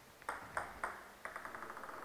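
Table tennis ball clicking: three sharp hits about a third of a second apart, then a quick run of small rapid bounces as the ball bounces to rest.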